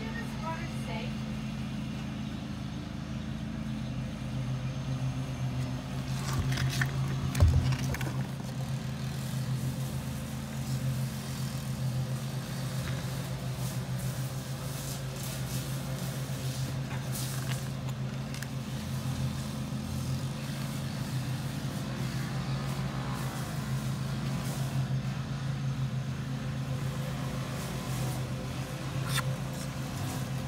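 Steady low mechanical hum, with a single thump about seven seconds in.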